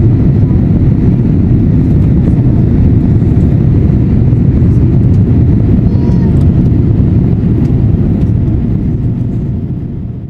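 Steady roar of jet engines and airflow heard inside the cabin of a Boeing 787 Dreamliner airliner in flight, fading out near the end.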